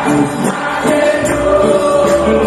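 Live worship band playing a Nepali worship song: electric guitar, bass guitar and drums with voices singing and a tambourine, one note held from about a second in.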